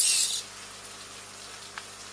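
Hobby servo, modified with its gear stopper cut out to turn all the way round, giving a brief high-pitched gear whir as its wheel turns, cut off about half a second in. A faint tick near the end.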